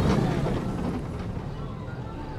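Family roller coaster train rolling past overhead on its steel track: a low rumble, loudest as it passes at the start and fading as it runs away.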